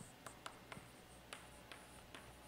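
Chalk writing on a blackboard: faint scratching with several short, sharp taps as the chalk strikes the board.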